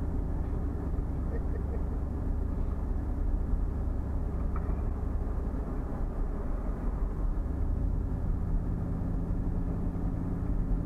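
Car driving along a road, heard from inside the cabin: a steady low rumble of engine and tyres. A low engine hum comes through more distinctly in the last couple of seconds.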